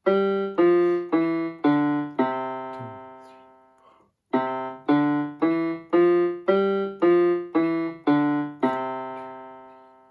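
MK-2000 electronic keyboard on a piano voice playing a left-hand five-finger exercise in the octave below middle C. Five notes step down G-F-E-D-C, about two a second, and the C is held; then nine notes run C-D-E-F-G-F-E-D-C, and the last C is held and left to ring out.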